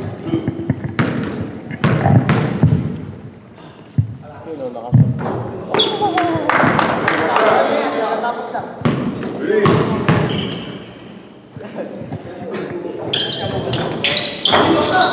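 A basketball bouncing on a hardwood gym floor, a few sharp separate bounces, under players' voices in a large hall.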